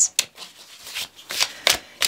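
A deck of oracle cards being shuffled by hand: papery rustling with a few sharp card snaps, the loudest near the end.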